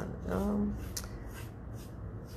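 A paintbrush stroking paint along a wooden picture frame: soft, rhythmic swishes of the bristles, about two to three strokes a second.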